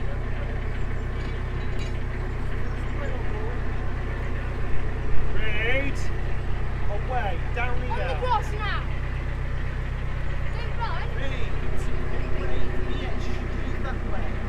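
A narrowboat's diesel engine idling with a steady low throb. Voices call briefly in the middle.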